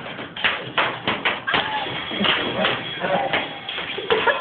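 Plastic toy lightsabers knocking against each other in a staged sword fight: a string of sharp, irregular clacks.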